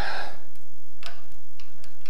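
A few light, unevenly spaced clicks of metal parts being handled at the tool holder of a woodturning hollowing system's articulating arm.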